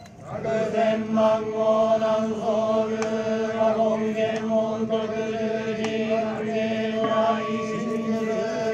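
Group of yamabushi chanting in unison on a steady, drawn-out drone during the lighting of the goma fire.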